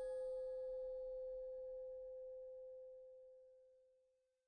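A bell-like chime note, the end of an outro logo jingle, ringing out with a clear main pitch and a few higher overtones and slowly fading away to nothing near the end.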